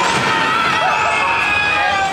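Loud electronic ride music with rising synth sweeps that repeat about once a second, over the free-fall tower's drop, with a few riders' shouts in the middle.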